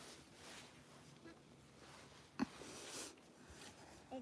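Quiet, with faint scraping of hands digging in damp sand and one sharp tap about two and a half seconds in.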